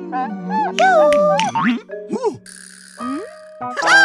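Cartoon soundtrack: a held music chord under a voice's wordless, swooping, contented sounds. A short hissy swish comes a little past halfway, and near the end a springy, boing-like rising-and-falling tone.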